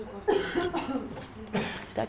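A person coughing twice: once just after the start and again about a second later.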